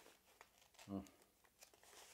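Faint rustling of paper sheets being handled, with a short hummed "mm" of appreciation about a second in.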